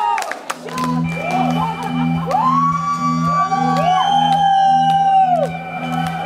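Electronic synth bass pulsing about twice a second as a synthpop song's intro starts, about a second in, with whoops and cheers from a concert crowd over it.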